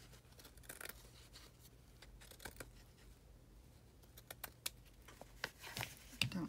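Scissors cutting through a piece of lace: faint, scattered sharp snips, coming closer together near the end.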